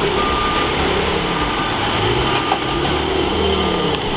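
Porsche 911 Turbo S twin-turbo flat-six running as the car drives slowly past in street traffic, with other vehicles idling around it. An intermittent high beep, like a reversing alarm, sounds over it.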